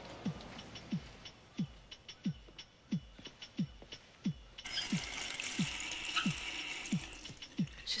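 Soft background score: a low note that drops in pitch repeats about every two-thirds of a second over light ticking. About halfway through, a steady hiss joins it.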